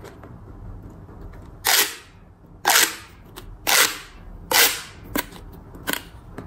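Ribbed plastic pop tubes, the stretchy limbs of a toy alien figure, popping as they are worked by hand: four loud, short pops about a second apart, then a couple of lighter clicks near the end.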